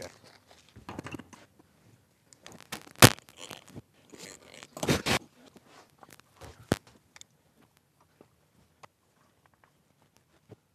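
Small screws rustling in a crinkling plastic bag as they are picked out, with clicks and knocks of screws and tools on the workbench and guitar. The loudest sound is a sharp knock about three seconds in, and a second crinkly stretch comes just before five seconds.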